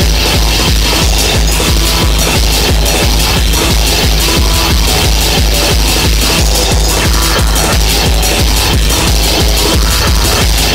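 1990s hardcore techno track playing: a fast, steady kick drum at about three beats a second, with dense electronic sounds layered above it.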